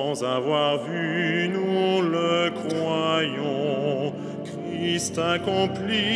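Cantors singing the liturgical chant of Vespers, a single melodic line with strong vibrato. The singing drops briefly about four and a half seconds in, then goes on.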